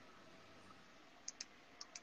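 Near silence: faint room tone, with four faint short clicks in two pairs in the second half.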